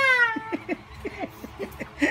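A child's high-pitched voice: a drawn-out call falling in pitch at the start, then a run of quick short giggles.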